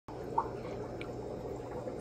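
Steady trickle of running water with a low electrical hum from an aquarium, with a faint plink about half a second in and another about a second in.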